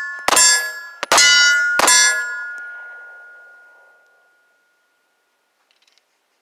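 Taurus G2C 9 mm pistol fired three times, less than a second apart, each shot followed by a metallic ringing that fades out over about two and a half seconds after the last shot.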